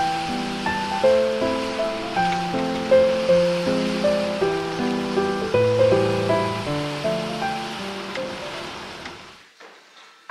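Background music: a gentle melody of short notes that each start sharply and fade, over a steady hiss. The music fades out near the end.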